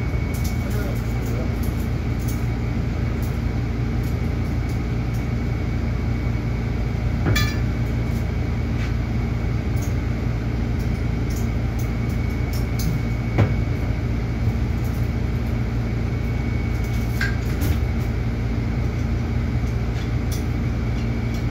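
A steady low mechanical hum fills the room. Over it come a few sharp metal clinks from cable-machine handles, chain and clips being handled, the loudest a little past halfway.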